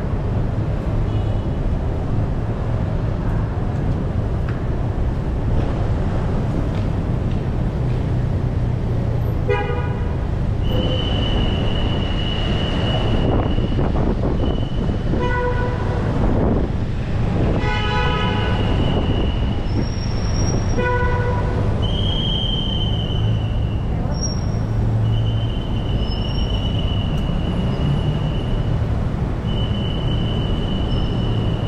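Long, shrill, steady blasts of a traffic attendant's whistle, repeated about half a dozen times from about a third of the way in, over the low rumble of idling and passing cars and motorbikes. Short car horn toots sound four times among them.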